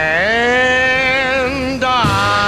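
A male singer holds one long sung note over the backing band. It slides up at the start and breaks off near the end.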